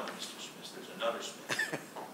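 Quiet, indistinct talk among people in a small room, with a short cough about one and a half seconds in.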